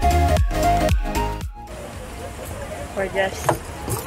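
Background vlog music with a steady beat that cuts off suddenly about a second and a half in, leaving quieter background noise and a brief voice near the end.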